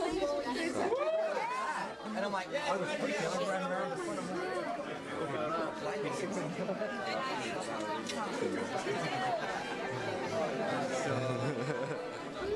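Many people talking at once in a crowded room: overlapping chatter, with no one voice standing out.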